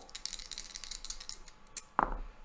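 Two dice clicking together as they are shaken and rolled into a felt-lined dice tray: a quick run of light rattling clicks that stops near the end.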